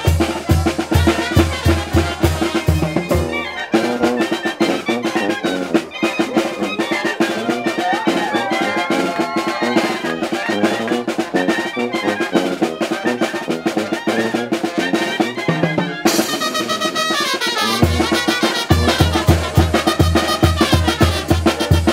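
Oaxacan brass band playing dance music: trumpets and trombones over drums. A steady low beat drops out about four seconds in and returns near the end.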